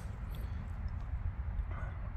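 Low, steady rumble of wind buffeting the microphone, with no distinct event standing out.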